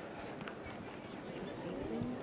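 Soft, faint hoofbeats of a dressage horse trotting on sand arena footing.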